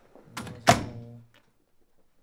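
A door shutting: a short rattle of the handle, then one loud thunk about two-thirds of a second in that rings low for a moment before dying away.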